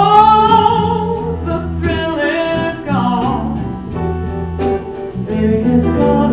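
A woman singing a blues song with a live band, backed by electric bass. Right at the start her voice slides up into a long held note, followed by shorter sung phrases.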